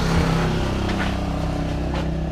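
A motor vehicle's engine running with a steady, even hum.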